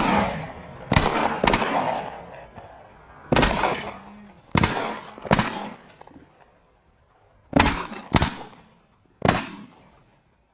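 Several shotguns firing at a flock of snow geese: about nine shots fired irregularly, in singles and quick pairs, each shot followed by a short fading tail.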